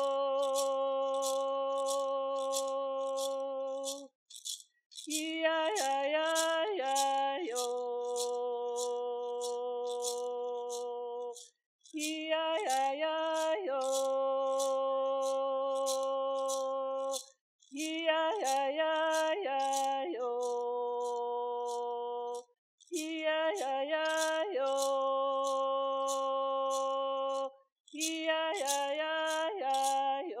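A woman singing an honor song solo, keeping time with a hand rattle shaken at a steady beat of about two shakes a second. Each sung phrase runs through quick turns of pitch and settles on a long held note, with short breaks between phrases.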